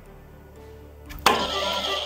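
Faint background music, then a quiz buzzer goes off about a second in with a sudden, loud sound that holds on.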